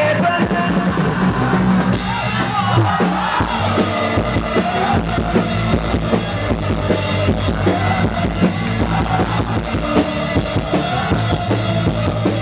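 Live rock band playing: a drum kit keeps a steady beat under guitars.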